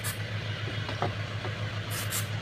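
Steady low hum of an idling engine, with a few faint clicks from the mirror mechanism being handled. Near the end comes a brief hiss, a short burst of penetrating-lubricant spray into the side-mirror's turning mechanism.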